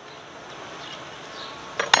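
A light metallic clink about two seconds in as a steel hive tool touches the hive, over a low steady outdoor hiss.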